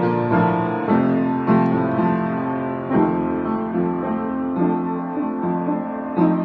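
Upright piano played in a free improvisation: sustained chords over a moving bass line, with new notes struck roughly every half second.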